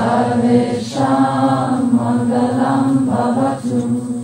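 Sanskrit mantra chanted on a steady, held pitch, in phrases with short breaks between them, about a second in and near the end.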